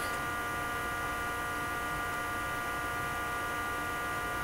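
Steady electrical hum with a set of fixed, unchanging tones over a faint hiss, holding at one level throughout.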